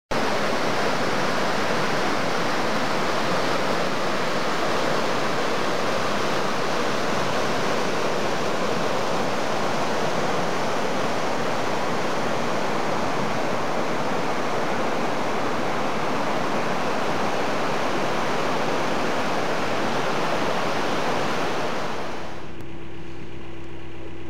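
Water pouring over a stepped river weir: a steady, loud rush of churning white water. About 22 seconds in it cuts off, giving way to a quieter, steady low hum from an idling narrowboat engine.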